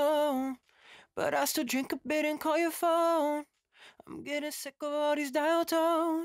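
An unaccompanied lead vocal singing short melodic phrases with brief pauses between them. It is played back through Steinberg's Black Valve valve-style compressor plugin, which is audibly reducing gain on the voice.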